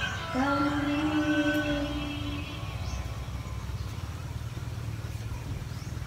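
Singing ends on a long held note that fades out about two seconds in, leaving only a steady low hum.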